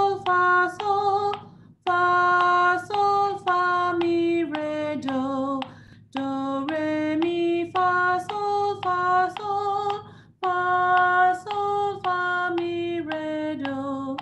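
A woman singing a simple stepwise sight-reading melody in solfège syllables (do, re, mi, fa, sol), each note held at a steady pitch. The notes move up and back down in short phrases with brief breaks between them.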